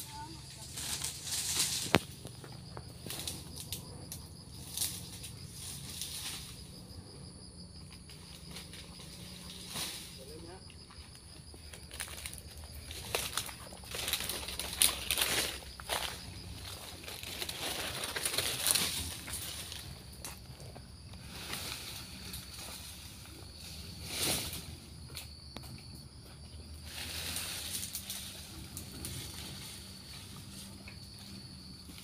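Repeated rustling swishes of oil palm fronds, coming in bursts of a second or two, with a sharp crack about two seconds in. A faint steady high drone runs underneath.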